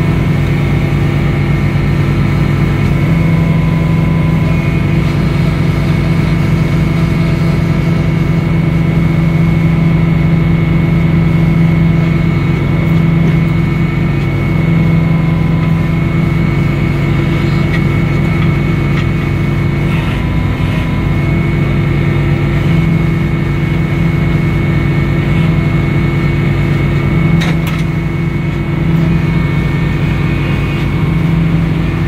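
Edmiston hydraulic sawmill running steadily: a constant engine-driven drone from the mill and its circular saw, with no break or surge as the log carriage works.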